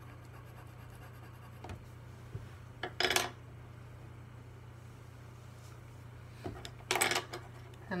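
Pencils being put down and picked up on a table by a watercolour palette, giving short clicks and clatters, the loudest about three seconds in and another near seven seconds, over a steady low hum.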